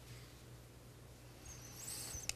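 Very quiet pause: a faint, steady low electrical hum, with a brief faint high-pitched squeak near the end.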